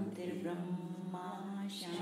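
Mantra chanting: a voice holding long notes on one steady pitch, with a short hiss before the next phrase near the end.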